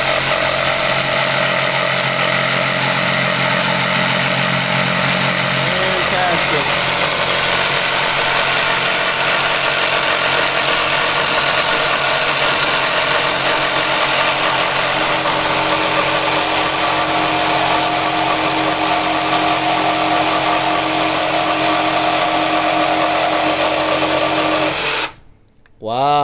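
Milwaukee M12 cordless jigsaw cutting across a pine 2x4, its blade running at a steady buzz through the wood. It stops suddenly a second before the end as the cut goes through and the board comes apart.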